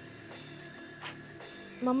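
Quiet background film-score music of held, sustained tones. A woman's voice comes in right at the end.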